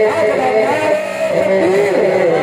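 A man singing a naat into a microphone, his voice drawn out in long sliding melodic runs.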